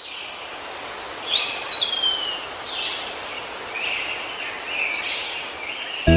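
Several birds calling over steady outdoor background noise, a nature-sound recording with no music. One clear call arches up and then slides down about a second and a half in, and shorter calls follow through the rest.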